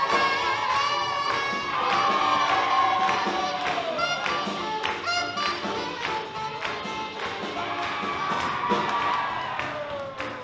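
Live big-band swing jazz with a steady beat, with a crowd cheering along.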